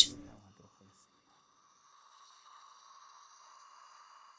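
Near silence after a voice trails off, with a faint steady hum.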